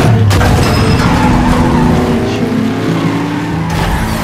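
Pickup truck sound effects: the engine running hard and tyres squealing in a skid, opening with a sudden loud burst and with the pitch sliding through the middle.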